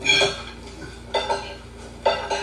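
A metal spoon clinking against a ceramic plate as the plate is handled. There is one clink at the start and two more a little past a second in, each ringing briefly.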